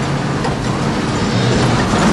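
Steady vehicle cabin noise heard from inside the cab: a low engine hum under an even rumble and hiss.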